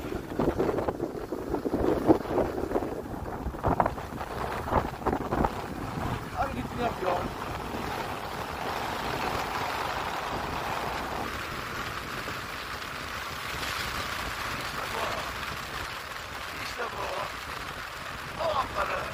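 Rushing wind on the microphone and the hiss of skis sliding over snow during a downhill run, choppy with scrapes and knocks in the first half, then a steady even rush.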